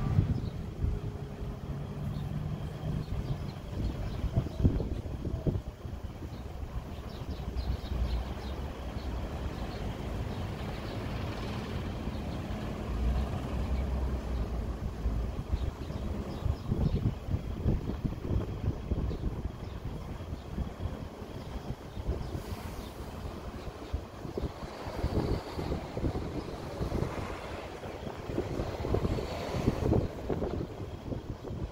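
Street traffic ambience: vehicles running and passing at an intersection, with gusts of wind buffeting the microphone.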